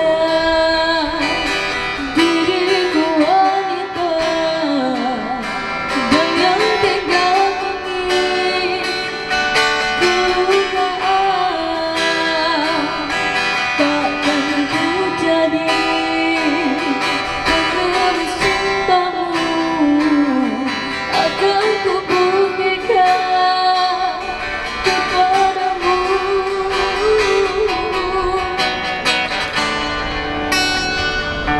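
A girl singing a Malay-language song into a microphone while playing an acoustic guitar.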